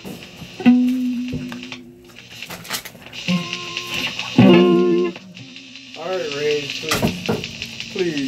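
Stratocaster-style electric guitar played through an amplifier: a few held notes, then a short run of strummed notes around the middle. Near the end come wavering, rising-and-falling tones and one sharp pop.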